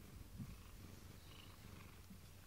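Domestic cat purring faintly and steadily, close to the microphone, with a soft bump about half a second in.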